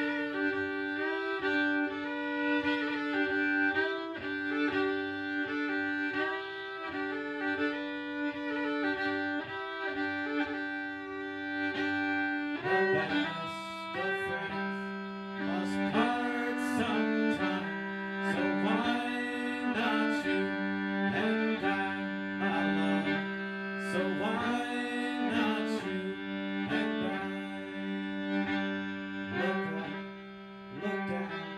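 Solo fiddle playing an instrumental break, bowed with double-stop drones under the melody. About halfway through, a lower sustained note enters underneath and the bowing grows busier.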